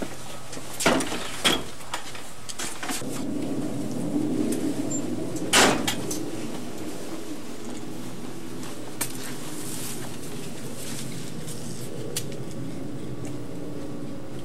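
A wooden yard gate being handled: a couple of sharp knocks about a second in, then a louder bang about five and a half seconds in, over a steady background hiss.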